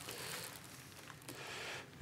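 Quiet room hiss with faint handling noise, no clear single event.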